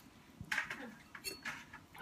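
A person eating pie close to the microphone: a soft "mm" of enjoyment about half a second in, then faint mouth and chewing noises.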